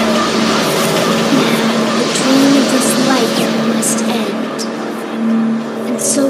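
Opening of a riddim dubstep track: a dense, noisy sampled texture with sliding tones over a held synth note, with no sub bass yet.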